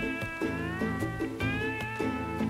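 Instrumental background music: plucked strings repeating short notes under a high lead melody that slides smoothly up and down between notes.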